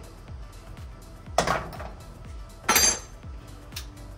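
Two metallic clinks of steel fork-servicing parts being knocked together and set down as the cartridge holder is taken off the damper rod. The second clink, near the middle, is the louder and longer one and rings briefly.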